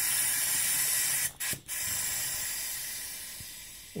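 Air hissing into a car's cooling system through a coolant vacuum tester as its valve is opened to let the vacuum out. The hiss breaks off twice briefly about a second and a half in, then fades steadily as the vacuum drops.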